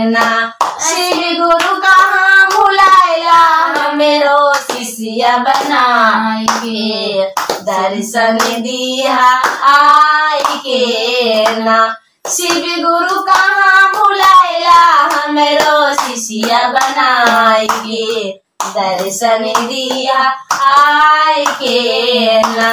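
Two women singing a Shiv charcha devotional song (Shiv guru bhajan) in Magahi, clapping their hands along in time.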